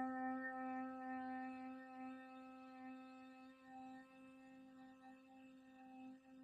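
A woman humming one steady low note with closed lips through a long exhale, slowly fading.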